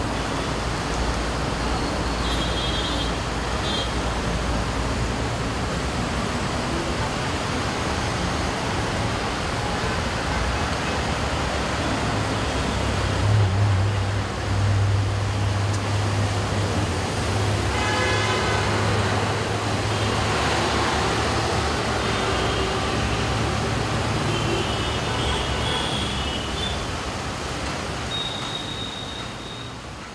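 Road traffic on a rain-wet road: a steady hiss of tyres and engines. A heavier vehicle's deeper hum swells about halfway through and lasts several seconds, and the sound fades out at the end.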